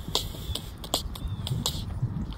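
Several sharp clicks at uneven intervals, the first shortly after the start and a clear one a little past a second and a half in.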